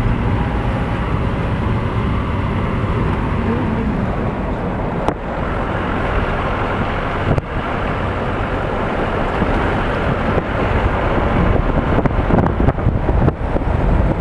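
Road and engine noise heard from inside a moving vehicle: a steady rumble that turns rougher and more uneven in the last few seconds, with wind buffeting the microphone.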